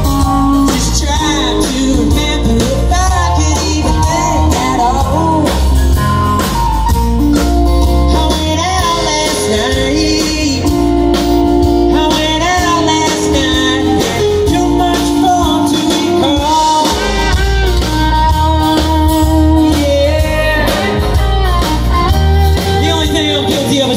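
Live blues-rock band playing loud through a PA: electric and acoustic guitars, keyboard, bass and drums, with a voice singing over them.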